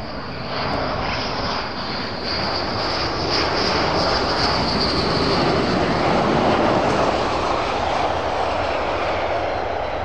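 F-15E Strike Eagle's twin jet engines on landing approach: a loud rushing roar with a high whine over it, growing louder as the jet comes close and peaking about two thirds of the way through, then easing a little as it flares over the runway.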